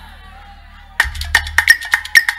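Live church band music. A low held note sounds softly, then about a second in, percussion kicks in with a quick, steady rhythm of sharp, bright wood-block-like strikes, several a second.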